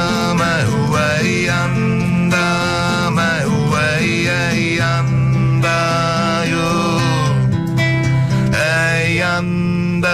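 Live band music: guitar accompaniment over a steady bass, with a gliding lead melody in long held notes.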